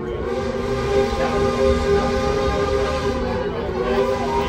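Running noise of a slowly moving excursion train heard from inside a passenger car: a low rumble with a steady hum of several tones.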